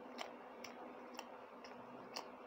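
Faint wet mouth clicks from chewing a mouthful of rice and curry, about two a second in a steady rhythm.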